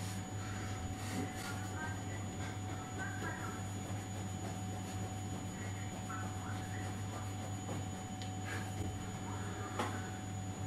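Quiet room tone with a steady low hum and no clear event.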